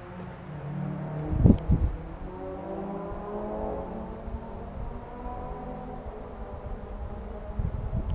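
Car engines racing in the distance, several tones slowly rising and falling in pitch as they rev and accelerate. Two short thumps come about a second and a half in.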